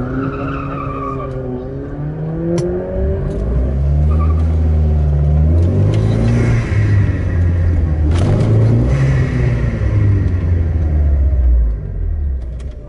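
Turbocharged 2.0-litre Renault F4R four-cylinder engine in a Renault 19, heard from inside the cabin: the revs come up about three seconds in and stay high as the car launches and accelerates hard from the hillclimb start. The engine note drops briefly near the end, as at a gear change.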